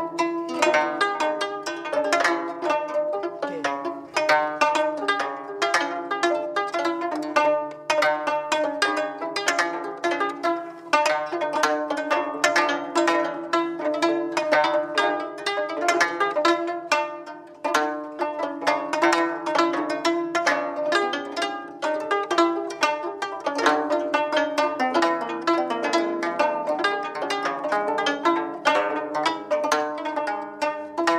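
Gayageum, the Korean plucked zither, played as a continuous run of plucked notes with a steady pulse, the strings ringing on between plucks.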